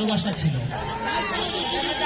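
Speech only: a man speaking through a public-address system, with people chattering nearby.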